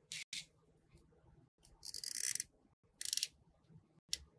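Hands handling small craft pieces on a tabletop make a few short scraping and clicking noises. The longest scrape comes about two seconds in, and a quick run of clicks follows about a second later.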